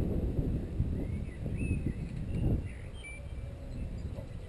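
Wind rumbling on an outdoor camera microphone, gusting strongly and then easing off about two-thirds of the way through, with faint bird chirps above it.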